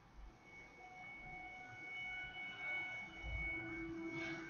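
Soft relaxation music of long, ringing bell-like tones that come in one after another and hold, with a couple of faint low bumps.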